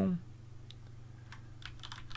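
Computer keyboard keys being pressed: a few faint, separate keystrokes as a short command prefix is typed.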